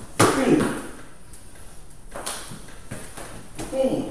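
A single sharp thump just after the start as a savate kick lands, with a short vocal sound on it, followed by a few faint steps and scuffs on the floor.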